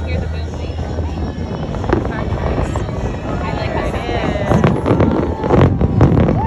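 A fireworks display going off across the water, with the bursts coming thick and fast as sharp bangs in the last second and a half, over people's voices.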